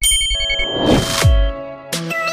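Logo-intro sound effects: a bright ding whose tones ring on, with a whooshing sweep falling in pitch about a second in.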